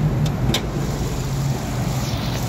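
2014 Nissan Rogue's engine idling with a steady low hum. Two short clicks come near the start.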